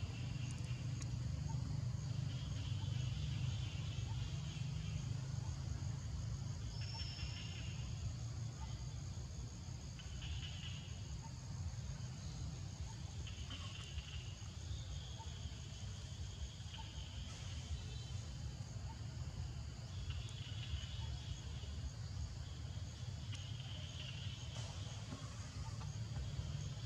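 Outdoor insect ambience: a steady high insect drone with shorter bouts of trilling every few seconds, over a low steady rumble. One brief high whistle comes about seven seconds in.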